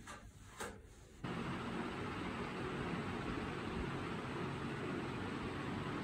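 A few faint knocks, then a sudden switch about a second in to a steady low hum with hiss, like a room fan or air conditioner running.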